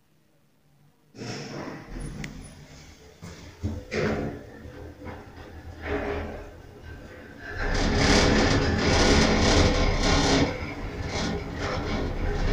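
ATLAS Excell traction elevator starting off about a second in and travelling down, with running noise and rattles in the cab that grow loudest in the second half.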